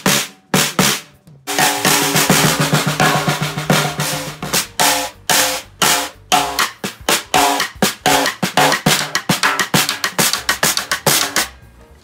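One-of-a-kind slatted wooden snare drum played with a stick in quick strokes and rolls, with a fat tone. From about a second and a half in, the head rings on with a low pitch under the hits for a few seconds.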